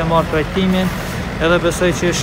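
A man speaking Albanian in an interview, over a steady low rumble.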